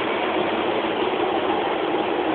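Docklands Light Railway train running: a steady hum and rushing noise with no break.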